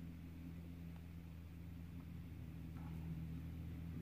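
Steady low hum of room background noise, with a faint tick about two seconds in from the drill pen pressing a resin drill onto the diamond-painting canvas.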